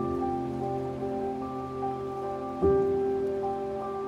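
Piano music of held chords, with a new chord struck about two and a half seconds in, over the steady rushing of a flowing stream.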